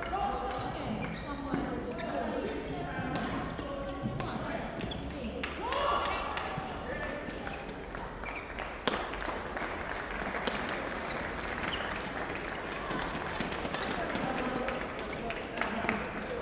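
Badminton match in a large hall: voices echoing around the court, with sharp scattered knocks from racket strikes on the shuttlecock and shoes on the court. The sharpest knock comes about nine seconds in.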